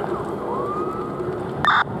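An emergency-vehicle siren rises in pitch about half a second in and then holds its note, over a steady rush of background noise. Near the end comes a short, loud burst of two-way radio static.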